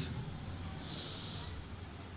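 A man drawing a soft breath in close to the microphone during a pause in speech: a hiss from about half a second in that lasts about a second. A faint steady low hum runs underneath.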